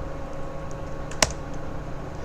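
Computer keyboard being typed on: a few light key taps and one sharper, louder key press about a second in.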